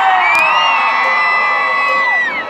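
Concert crowd cheering with many voices yelling long held whoops at once, trailing off with falling pitch at the end.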